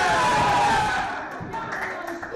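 A small group of people shouting and cheering in joy at a win. It breaks out suddenly and is loudest in the first second, then fades.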